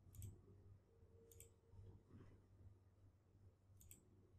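Three faint computer mouse button clicks, spaced a second or more apart, over near silence.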